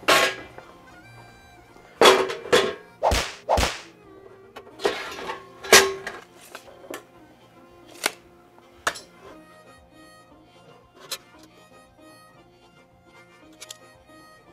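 Sheet-metal enclosure parts knocking and clanking as they are handled on a countertop: a dozen or so sharp knocks, loudest and closest together in the first six seconds, then scattered single taps. Background music runs underneath.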